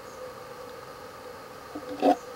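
Quiet, steady background hiss with a faint hum: room tone with no distinct event, and a brief faint sound right at the end.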